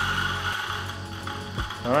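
DF64 Gen 2 single-dose coffee grinder winding down at the end of a grind, its motor whine fading out, while the rubber bellows on top is pumped to push retained grounds out of the burrs.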